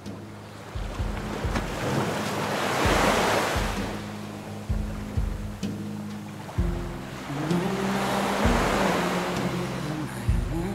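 Ocean surf washing up a beach, the wash swelling twice, about three seconds in and again near the end. Under it runs the instrumental intro of a song: sustained low notes, a short melody late on, and a few deep drum thumps.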